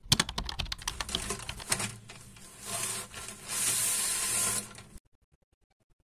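Brown paper crinkling and rustling as it is handled, a dense run of sharp crackles with two longer rustles in the middle; it stops abruptly about five seconds in.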